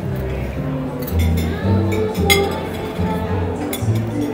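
Jazz playing, led by a bass line of low notes about half a second each, under a few sharp clinks of metal serving pans and utensils, the loudest a little after two seconds in.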